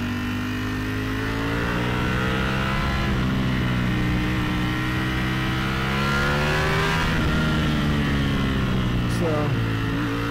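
Ducati Panigale V4S's 1103 cc V4 engine pulling hard on the move, its pitch climbing and easing as the throttle is worked through the bends, with a brief dip near the end, over wind noise on the microphone.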